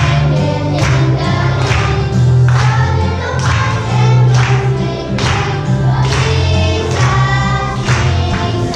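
A group of children singing a song together over music with a steady beat and bass.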